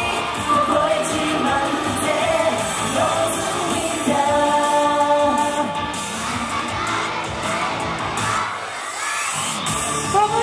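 Live J-pop idol performance: male voices singing into handheld microphones over a loud pop backing track, with some long held notes around the middle. In the last few seconds the bass drops away and a rising sweep builds up into the next section.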